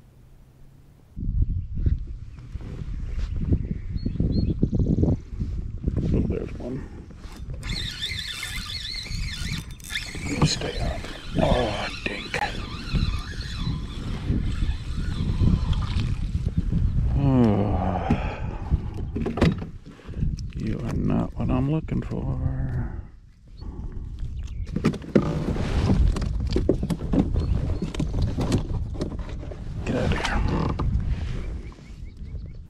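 Kayak fishing: a hooked fish being fought from a kayak, with rod, reel and water noise, knocks and rumbling handling or wind noise on the microphone that starts suddenly about a second in. A falling whine-like tone comes about 17 seconds in.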